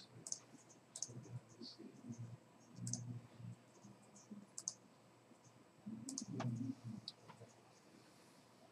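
Faint computer mouse clicks, single and spaced irregularly a second or two apart, with a few low rumbles between them.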